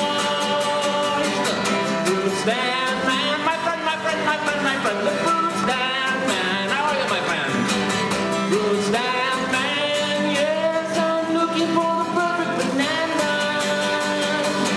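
A man singing while strumming an acoustic guitar, performed live.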